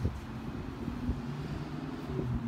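Steady low engine hum of city traffic.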